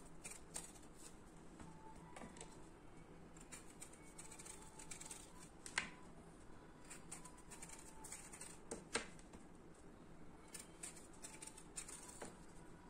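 Small kitchen knife peeling the skin off a raw green mango: faint, scattered scrapes and clicks of the blade, the sharpest about six seconds in and again near nine seconds.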